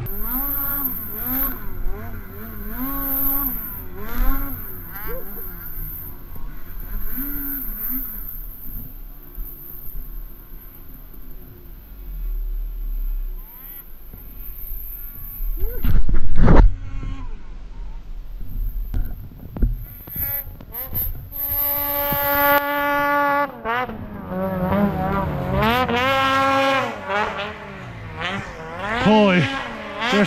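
Snowmobile engines revving up and down in repeated blips, then holding high revs for a couple of seconds in the second half. A single loud burst of noise comes about halfway through.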